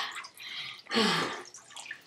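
Water dripping and running from soaked hair back into a bucket of ice water, with a short breathy vocal sound about a second in.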